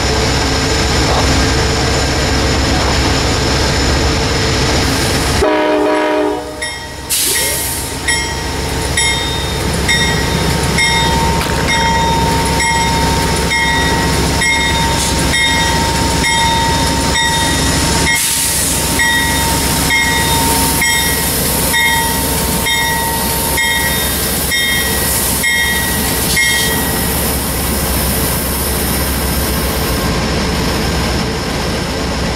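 Amtrak GE Genesis diesel locomotive standing with its engine running steadily, close up. From about eight seconds in until near the end its bell rings evenly, about once a second.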